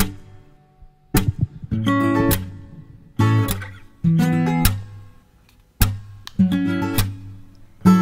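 Background music: an acoustic guitar strumming chords, each chord struck and left to ring out before the next.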